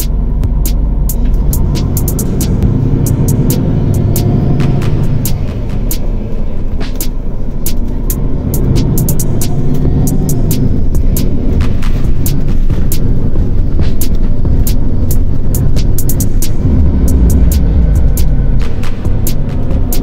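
Background music mixed with a car's running and road noise heard from inside the cabin, with many sharp clicks scattered throughout.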